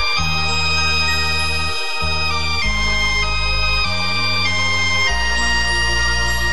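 Instrumental music: sustained organ-like keyboard chords over a bass line that steps to a new note about every second.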